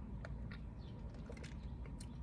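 Drinking through a straw from a plastic cup: a few faint clicks and mouth sounds over a low, steady rumble.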